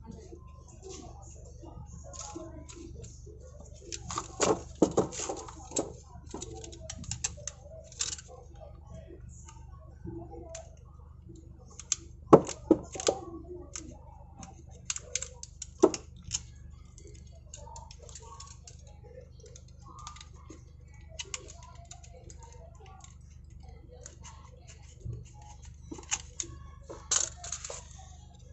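Irregular clicks, snaps and knocks of hard plastic as a car side mirror's folding mechanism is handled and worked on by hand, with louder clusters of sharp clicks about four, twelve and sixteen seconds in and again near the end.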